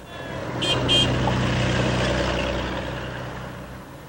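Street traffic: a motor vehicle passes, its engine and tyre noise swelling over the first second and slowly fading away. Two short high chirps sound about a second in.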